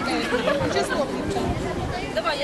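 Background chatter: several people's voices talking at once, with no single clear speaker.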